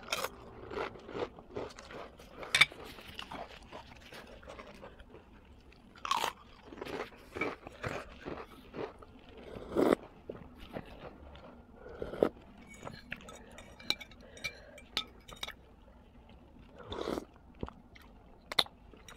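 Close-up eating sounds: a person chewing and biting a mouthful of noodles, in irregular short bursts with a few sharper clicks.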